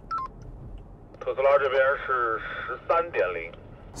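A short two-tone beep from a handheld two-way radio, then a voice coming through its small speaker for about two seconds, thin and tinny with no bass.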